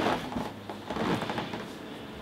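Soft rustling and handling noises from a person moving at a desk, giving way to a faint steady background hum in the second half.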